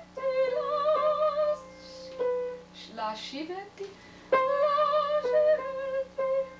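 A woman singing in a trained classical style with wide vibrato, accompanied by piano. The voice breaks off for a couple of seconds in the middle, leaving faint breath sounds and a short gliding vocal sound, then comes back louder on a new phrase with piano.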